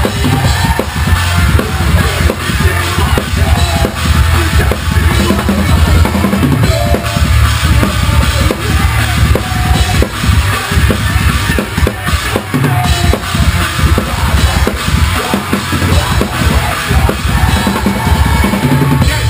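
A drum kit played hard and close up during a live metal song, with rapid, continuous kick-drum strokes under snare hits and cymbal crashes. The rest of the band sounds faintly underneath.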